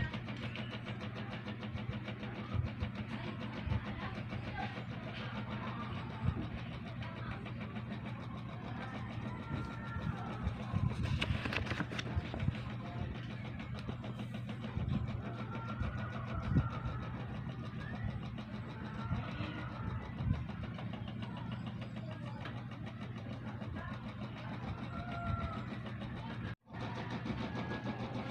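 A steady low hum like a running engine, with occasional soft knocks.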